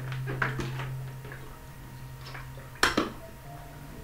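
Small hard objects being handled on a hard surface: a few light clicks and clinks, then a sharper knock near the end. A steady low hum runs under the first part.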